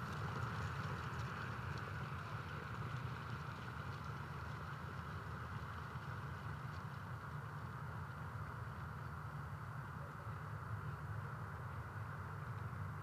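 Steady low hum with a hiss of background noise, even throughout and without distinct hoofbeats or voices.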